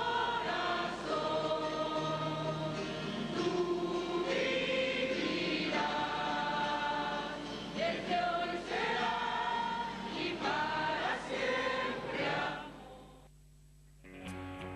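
A choir singing with musical accompaniment, fading out about a second and a half before the end.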